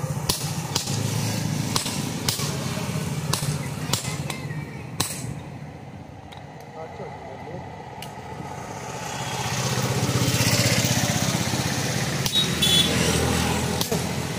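Hammer blows on a steel punch driving the eye hole through a red-hot axe head on an anvil, striking at irregular intervals, with a gap of a few seconds in the middle. A motor engine runs underneath, growing louder about nine seconds in and fading near the end.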